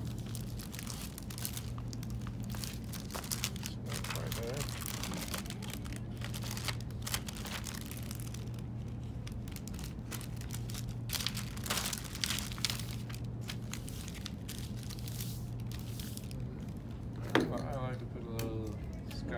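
Clear plastic book-jacket film and its paper liner crinkling and rustling as hands smooth, press and fold them flat on a table, in a run of short crackles. A sharp click comes near the end.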